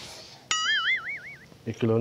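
A cartoon-style 'boing' sound effect: a sharp twang whose pitch wobbles quickly up and down for about a second.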